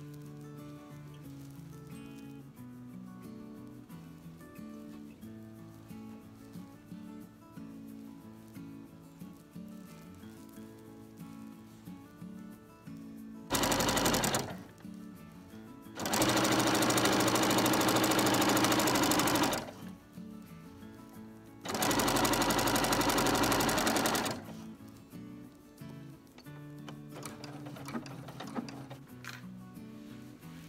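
Electric sewing machine stitching through quilt fabric strips and batting in three runs. There is a short burst about halfway in, then a longer run of about three and a half seconds, then one of about two and a half seconds. Soft background music plays throughout.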